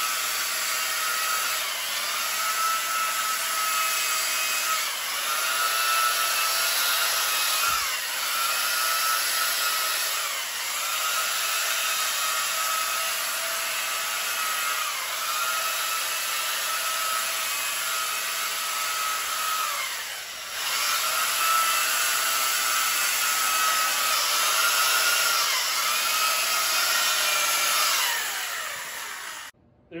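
Electric chainsaw cutting into a block of ice, its motor whine sagging in pitch and recovering every few seconds as the bar bites and is eased off. Near the end the motor winds down and stops.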